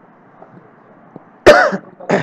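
Quiet room tone, then a person coughs once, loud and sudden, about one and a half seconds in.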